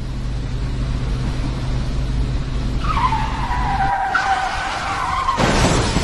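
A motor vehicle running with a steady low hum. About three seconds in comes a high skidding screech that slides down in pitch, and near the end a loud burst of noise.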